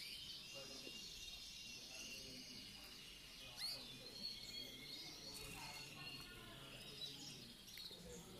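Caged canaries chirping faintly, a scatter of short high calls over a low steady background of room noise.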